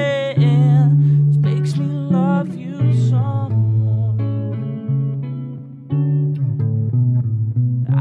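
Instrumental passage of a song: picked guitar notes over sustained bass notes, the playing dropping away briefly just before six seconds.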